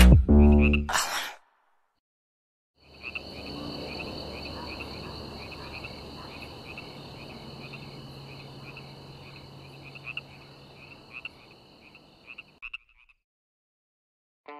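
A song ends about a second in; after a short silence, a chorus of high, rapidly pulsing animal calls with a low hum beneath runs for about ten seconds, slowly fading, then cuts off.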